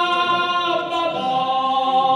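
Male a cappella choir singing in close harmony, holding long sustained chords and moving to a new chord about a second in.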